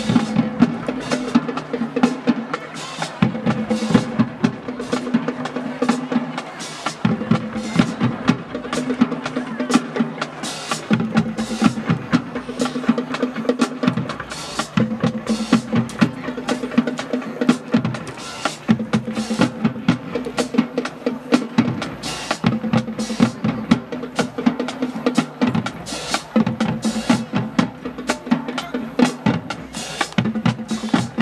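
High school marching band playing a marching cadence as it moves onto the field. Snare and bass drums and cymbals keep a steady beat, and a low held note returns in phrases every three to four seconds.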